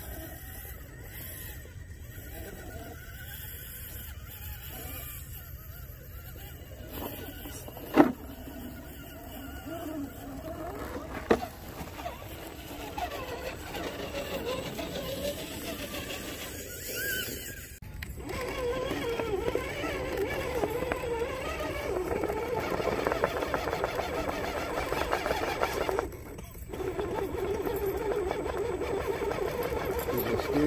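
Axial Capra RC rock crawler's electric motor and geartrain whining, rising and falling with the throttle as it climbs over rock, louder in the second half. Two sharp knocks in the first half.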